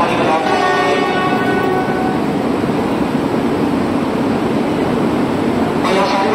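E2 series Shinkansen trainset moving off along the platform. For about the first two seconds it gives a whine of several pitched tones, then a steady rumbling noise.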